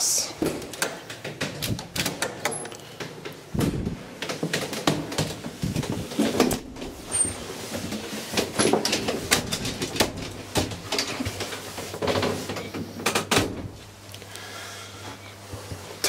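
1921 Titan traction elevator car travelling up its shaft: a steady low hum under constant clicking and rattling, with several louder knocks along the way.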